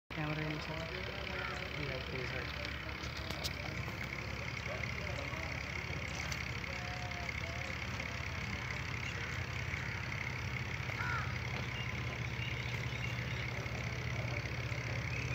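A steady low engine hum, with people talking faintly in the background.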